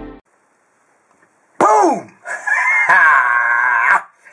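Intro music stops, and after a pause comes a rooster-like crow: a short call falling steeply in pitch, then a long held, slightly wavering note.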